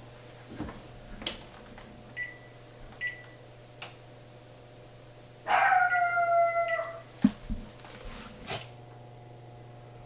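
Oven door shut and oven keypad buttons pressed, with short electronic beeps about two and three seconds in and a few clicks of handling. In the middle comes the loudest sound, a drawn-out whine falling slightly in pitch and lasting about a second and a half.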